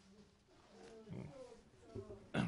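Near silence with faint, low voices murmuring away from the microphone, a little louder about a second in.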